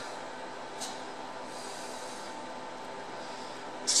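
Steady hiss with a faint, steady high test tone, from a Fender Deluxe Reverb tube amp running a sine-wave signal into a dummy load. One 6V6 output tube is glowing red, which the repairer puts down to a bad tube socket that is probably losing bias voltage on pin 5.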